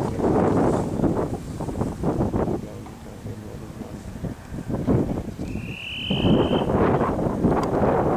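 Wind buffeting the camera microphone in uneven gusts, easing for a couple of seconds mid-way and picking up again about six seconds in. A short high tone, rising slightly, sounds about five and a half seconds in.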